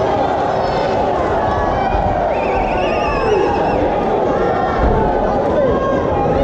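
Crowd of spectators shouting and chattering, many voices overlapping into a steady din, with one high wavering call standing out for about a second near the middle.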